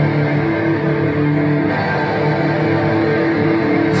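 Live hardcore band's distorted electric guitars and bass holding heavy sustained chords with no drums, loud and somewhat boomy as heard from within the crowd. Right at the end the full band with drums crashes in.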